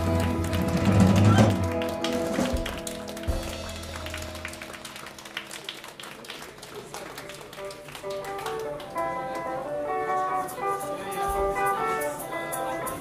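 Live band of guitars, bass and drums: a held chord with bass rings out and fades about four seconds in, with light taps throughout. A guitar picks single notes from about eight seconds in.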